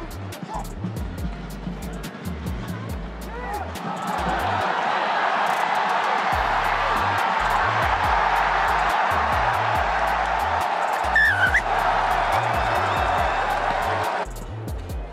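Background music with a pulsing bass beat over a stadium crowd cheering. The cheer swells about four seconds in and stays loud, with a brief shout rising out of it near the end.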